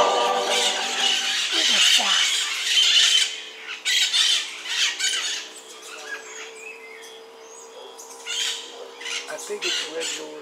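Birds squawking and calling in the forest canopy, loudest and busiest in the first three seconds, then fewer, sharper calls over a steady low hum.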